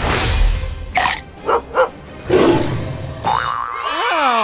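Cartoon sound effects over background music: a lion character roaring in loud noisy bursts and a small dog barking twice, with a rising springy boing near the end.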